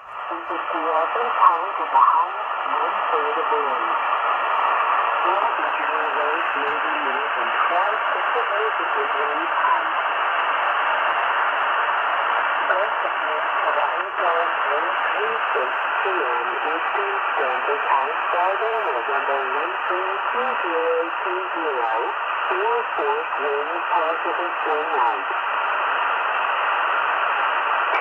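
Tecsun PL-330 portable shortwave receiver's speaker playing the Canadian Coast Guard marine weather broadcast on 2749 kHz upper sideband: a voice reads the forecast through steady static and hiss, with the thin, telephone-like sound of single-sideband reception.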